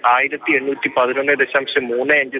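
Only speech: a man reporting in Malayalam, his voice thin and narrow as over a telephone line.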